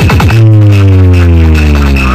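Loud electronic DJ remix played through a huge stacked DJ speaker box rig: a fast drum roll that ends about half a second in, then a heavy bass note whose pitch slowly falls.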